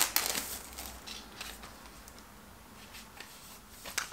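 Soft rustling and crinkling of a CD's cardboard digipak packaging being handled and opened. The loudest rustle is in the first half second, then come faint scattered rustles and small clicks.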